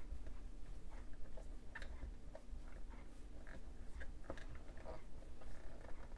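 Faint scattered taps, clicks and rubbing as hands press a thick acrylic stamping block down onto paper on a tabletop, over a low steady hum.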